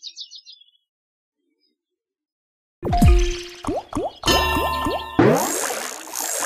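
Online slot machine game sound effects: a faint high chime fades out, then after a short silence a loud burst of watery, bubbly game effects with quick falling tones starts about three seconds in as the free-spin reels come back.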